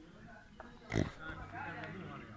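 People talking in the background, broken by one sudden, loud burst of noise about a second in.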